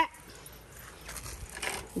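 Quiet outdoor background with a few faint rustles about a second in.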